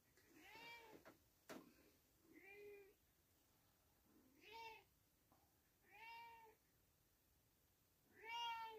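A domestic cat meowing faintly four times, each call short and spaced a second or two apart, with a single click about a second and a half in.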